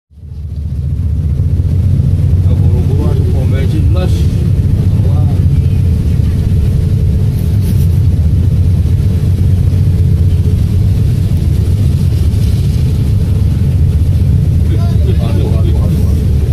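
Steady low drone of engine and road noise inside a moving vehicle's cab on the highway, fading in at the start.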